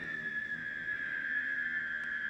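A person's high-pitched squeal, held steadily on one note.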